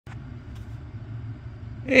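Ram 1500 pickup idling, heard from the back seat inside the cab as a steady low rumble.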